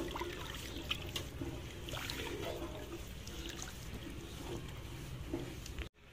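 Wooden spoon stirring a thin, watery semolina mixture in a metal pot: faint sloshing with light scrapes and clicks of the spoon against the pan, cutting off abruptly near the end.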